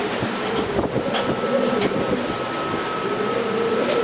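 Strong wind across an open ship's deck, buffeting the microphone, over the steady rumble of a ship under way in rough seas. A few faint sharp clicks come through the roar.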